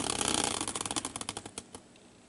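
Homemade caster-wheel prize wheel spinning down: a fast run of clicks from its pointer that slow and thin out as the wheel coasts to a stop near the end.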